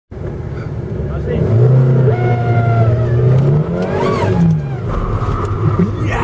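Toyota Corolla's engine running, heard from inside the cabin: it holds a steady pitch, then revs up and back down about midway through.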